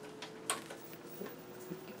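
A single sharp click about half a second in as the CRT monitor's front power switch is pressed, with a few lighter ticks over a faint steady hum.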